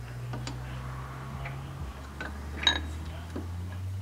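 Light metallic clicks and knocks as the steel lathe chuck is worked by hand on the spindle with a bar, with one sharper clink about two-thirds of the way through, over a steady low hum.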